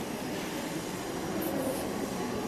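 Steady room noise of a large hall, a low even rumble and hiss, with a brief high rustle about one and a half seconds in.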